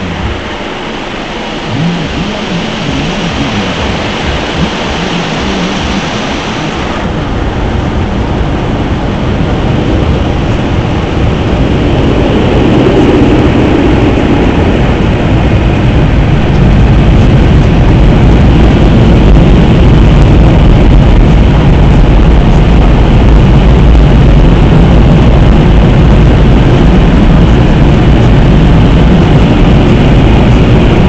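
Car wash water jets spraying onto a car's windshield, heard from inside the car, cutting off about seven seconds in. Then a steady low rumble of air builds and stays loud, fitting the wash's drying blowers.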